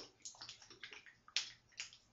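Plastic applicator bottle being shaken to mix the two parts of a clear shine hair rinse, the liquid inside sloshing in a few short, faint strokes, the loudest about a second and a half in.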